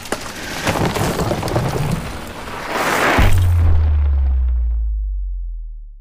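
Logo-sting sound effect: a noisy build of rapid crackling clicks that swells about three seconds in, then lands on a deep boom that hangs and slowly fades out.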